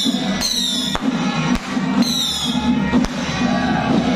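Firecrackers going off in a few sharp cracks, about a second in, then half a second later and again near three seconds, over steady procession music. High whistles falling in pitch sound near the start and about two seconds in.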